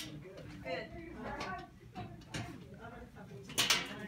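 Quiet, indistinct talk, with one brief sharp noise near the end.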